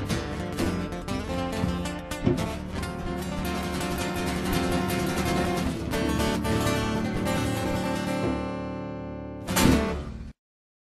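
Acoustic guitars strumming with a hand drum, finishing the song: the strumming and drum strokes stop about six seconds in and a final chord rings on and slowly fades. A short loud burst of sound comes near the end.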